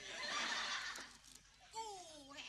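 Studio audience laughing in a short burst that dies away about a second in.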